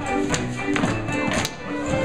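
Live contra dance band of fiddles, guitars, keyboard and banjos playing a dance tune, with sharp taps from dancers' feet on the wooden floor.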